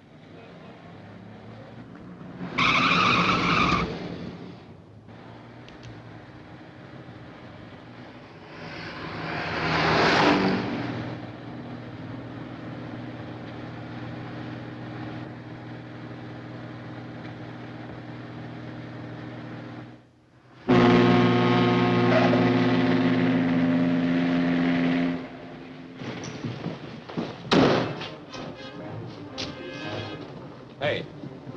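A taxi's tyres squeal briefly about three seconds in, and a car engine swells and fades around ten seconds in, over a film score. About two-thirds of the way through, a ship's deep whistle sounds one long blast of about four seconds.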